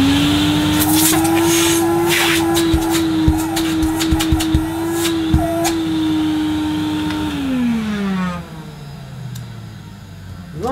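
Electrolux 305 cylinder vacuum cleaner's 700-watt motor switched on. It spins up with a rising whine and runs at a steady pitch, with a few light knocks in the middle. It is switched off about seven seconds in and winds down with a falling pitch.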